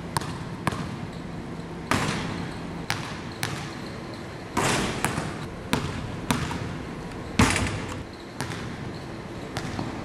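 A basketball being dribbled on a gym floor, irregularly spaced bounces that echo in the large hall, with one louder bang about three-quarters of the way through.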